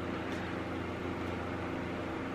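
Steady room noise: an even hiss with a faint low hum, with no distinct events.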